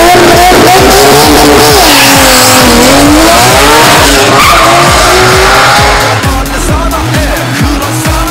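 Drag racing car launching off the line at full throttle, very loud, its engine pitch dipping about three seconds in and climbing again, fading after about six seconds. Background music with a steady beat runs underneath.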